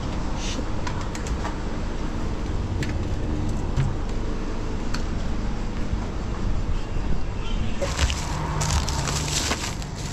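A steady low hum and rumble with a few light clicks. Near the end there is a louder, crinkly rustling of a thin plastic shopping bag being handled.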